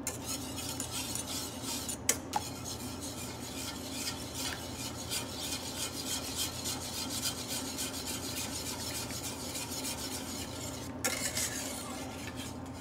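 A utensil stirring steadily and quickly in a stainless steel saucepan, scraping against the pan as butter is worked into a red wine beurre rouge to emulsify it. A steady low hum runs underneath, and there is one sharp click about two seconds in.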